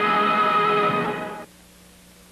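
Opening music: one held chord that fades out about a second and a half in, leaving a faint low hum.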